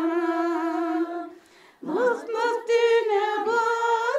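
An elderly woman singing a slow, unaccompanied melody in long held notes with a wavering vibrato. She breaks off for about half a second, a little over a second in, then comes back in on a rising note.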